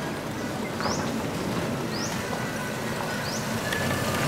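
Restored M151A2 military jeep's engine running as it drives up a dirt road, growing louder as it gets closer toward the end.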